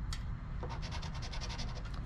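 Edge of a poker-chip scratcher rubbing rapidly back and forth across a lottery scratch-off ticket, scraping off the coating in quick, even strokes of about ten a second, starting about half a second in.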